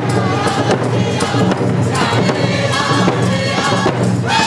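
A group of Indigenous hand drummers singing together in chorus while beating rawhide frame drums in a steady, even beat.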